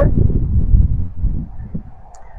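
Low rumbling noise on the microphone, fading away over the second half.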